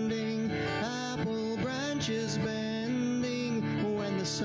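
A man singing a slow song, holding long notes, while accompanying himself on acoustic guitar.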